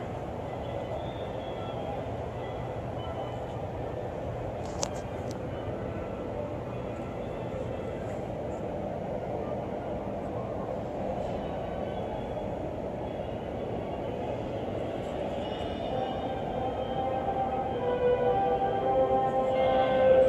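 Steady low rumble of a large indoor hall's background noise, with a single click about five seconds in; faint tones come in and grow louder near the end.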